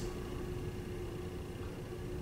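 Classroom room tone: a steady low rumble and faint hiss with a thin steady hum.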